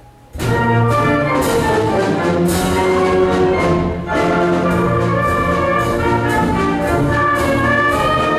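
A school concert band of brass, woodwinds and percussion starts a march together about a third of a second in, all at once and loud, then plays on with percussion strokes marking the beat.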